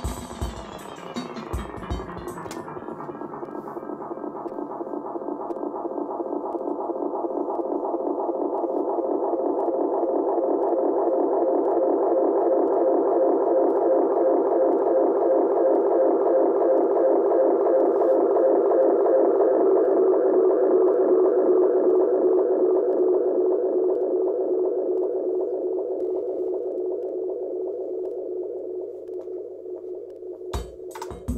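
Roland RE-201 Space Echo tape delay pushed into runaway feedback: the echoes of drum machine hits pile up into a dense droning wash that sweeps down in pitch in the first couple of seconds as the controls are turned, then swells for about twenty seconds and slowly fades. A faint low hum runs underneath.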